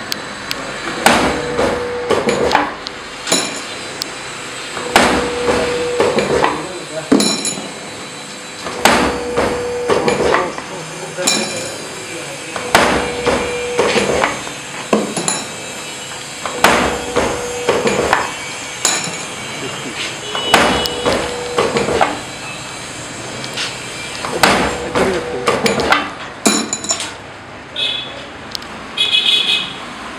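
Automatic wire-straightening, cutting and bending machine for scaffolding G pins running in steady cycles: about every four seconds, three sharp metallic knocks roughly a second apart from the cutting and bending dies, with a short motor hum between cycles.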